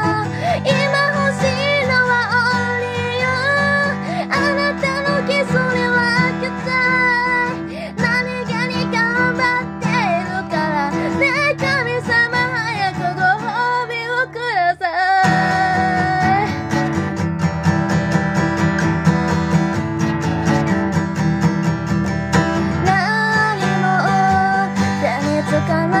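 Guitar playing a song, with a woman's singing voice over it; the music briefly drops out and changes about fifteen seconds in.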